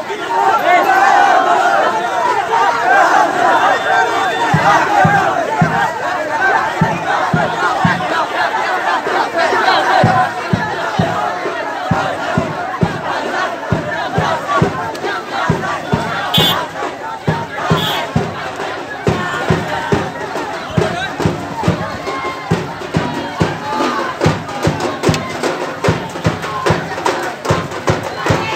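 A large crowd of men shouting and chanting together, loudest in the first ten seconds. From about four seconds in, a steady run of deep beats, roughly two a second, runs under the voices.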